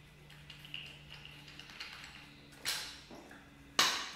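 Handling noise as a small refractor telescope is lifted off its mount: a few faint ticks, then two sharp knocks near the end, the second louder.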